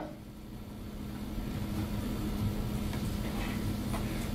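Room tone with a steady low hum, growing slightly louder over the seconds.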